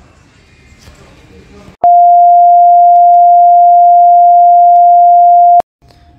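A loud electronic beep, one steady pitch held for nearly four seconds, starting about two seconds in and cutting off abruptly; before it, only faint background noise.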